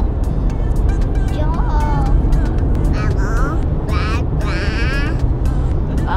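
Steady low road and engine rumble inside the cabin of a moving SUV, with short high-pitched voice sounds over it at a few moments.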